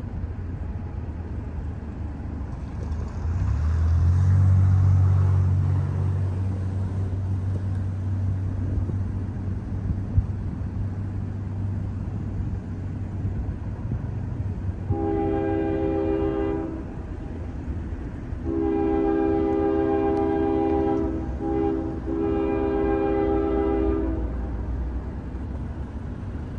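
A low rumble swells and fades a few seconds in. Later a distant diesel locomotive air horn sounds long, long, short, long, the standard grade-crossing signal.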